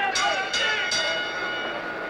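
Boxing ring bell struck twice, its metallic tone ringing on and fading: the bell ending the round.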